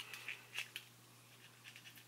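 Faint clicks and light scratching from handling small plastic eyeshadow packaging, a few light taps in the first second, then near quiet, over a steady low hum.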